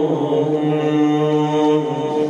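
A man's voice chanting a rawza, a Shia Muharram lament recitation, holding a long steady note that eases off near the end.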